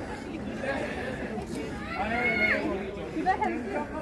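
People chattering, several voices talking at once, with a higher-pitched voice standing out about two seconds in.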